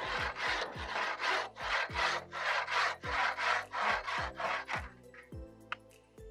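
Hacksaw cutting through soft timber by hand, about three back-and-forth strokes a second, stopping about five seconds in as the notch for the roof piece is cut.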